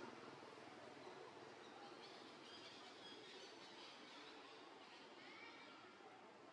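Near silence: faint forest ambience, with a few faint, thin, high calls in the middle and a short rising call near the end.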